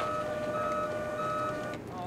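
Forklift reversing alarm beeping in short even pulses about every 0.6 seconds, over a steady machinery hum; both stop shortly before the end.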